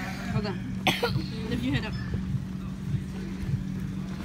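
Indoor soccer game in a large hall: players' short shouts and calls, with a sharp knock about a second in, over a steady low hum.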